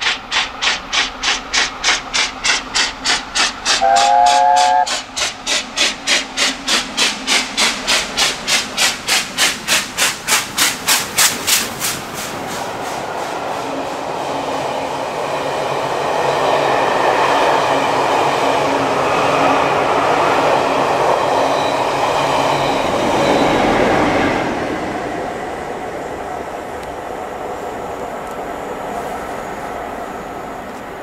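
LNER A4 Pacific 4498 Sir Nigel Gresley working hard, its three-cylinder exhaust beating fast and quickening as it approaches. About four seconds in it gives a short blast on its three-note chime whistle. After about twelve seconds the beat gives way to the rumble of the coaches rolling past, which fades away after about 24 seconds.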